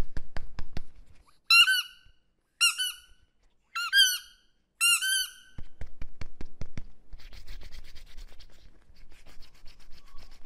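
An orange rubber stress ball squeezed and kneaded by hand: rapid clicking, then four short squeaks about a second apart, then more rapid clicking and softer rubbing.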